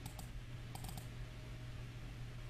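A handful of faint computer keyboard clicks in the first second, over a low steady hum.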